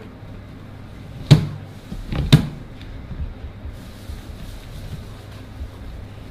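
Two sharp knocks about a second apart as a lamb loin and boning knife are worked against a plastic cutting board while the bone is trimmed, over a faint steady low hum.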